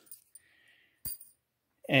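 One short, sharp metallic click about a second in, in otherwise near-quiet surroundings: a hand or tool knocking against metal while the blower motor's bolts are being removed.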